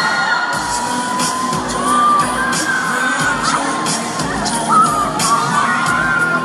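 Pop music with a steady beat playing in a hall, with an audience cheering over it.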